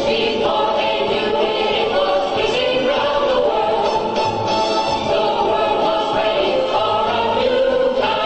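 Music with a choir singing, several voices holding and moving between sustained notes over accompaniment.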